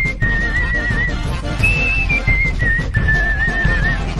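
Background music with a whistled melody: single notes held for about a second each, wavering in pitch, stepping up and down over a busy backing with a beat.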